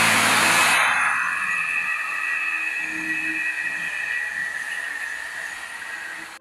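Factory machinery noise: a loud hiss that eases off within about a second, then a steady high whine that slowly fades away.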